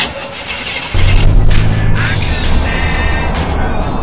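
A car engine comes in suddenly about a second in and keeps running loud and low, with music playing over it.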